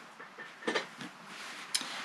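Faint handling noises from cotton fabric border strips being picked up and moved: two brief soft rustles about a second apart.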